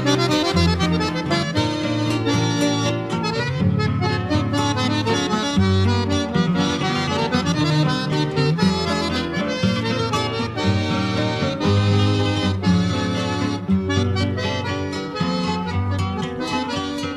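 Instrumental break in a Rio Grande do Sul regional (gaúcho) song: accordion playing the melody over a rhythmic accompaniment, between sung verses.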